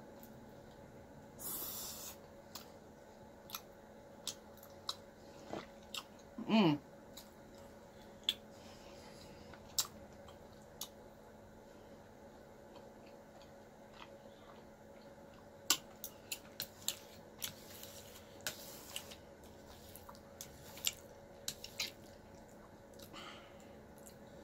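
Close-miked chewing of tteokbokki rice cakes and ramen noodles: scattered wet mouth clicks and smacks, thicker in the second half. A short hum, falling in pitch, comes about six and a half seconds in.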